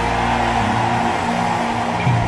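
Background music: a sustained keyboard chord held steady over a low bass note, with no beat.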